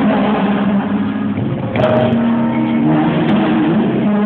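Live rock band playing a song in an arena, heard from the audience, with a singer holding long notes. There is a short sharp sound about two seconds in.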